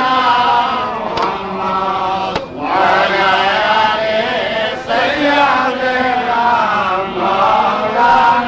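Voices chanting a devotional melody in long, wavering held notes over a steady low drone, with brief breaks between phrases.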